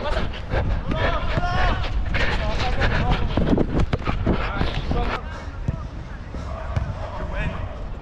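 Football players shouting and calling to each other over a steady low wind rumble on a head-mounted action camera, with a few sharp thuds of the ball being kicked.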